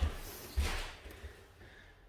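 Two soft thuds of bare feet on a wooden dojo floor, with the rustle of movement, fading to near silence in the second half.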